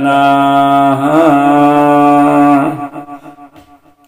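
A man's voice chanting Gurbani holds the last note of a line for nearly three seconds, with a slight waver partway through, then fades away into a short pause.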